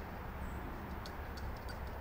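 Plastic trigger spray bottle being squirted in a few faint quick spritzes, heard as short ticks over a low steady background hum.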